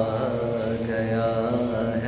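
A man's solo voice singing a naat unaccompanied, drawing out long held notes between lines of the verse.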